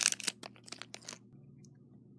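A short run of light plastic clicks and crinkling from hands handling a Lego blind bag and minifigure pieces, dying away after about a second.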